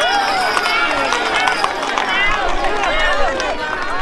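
A large crowd of pilgrims shouting and cheering, many overlapping voices calling at once.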